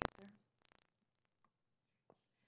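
Near silence: room tone, after a short faint sound right at the start.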